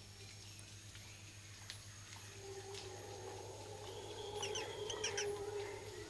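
Wattled jacana giving a quick run of short, high calls about four to five seconds in, over a faint steady low drone.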